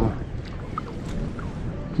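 Steady wind rumble on the microphone over shallow, wind-rippled water, an even noise with no distinct events.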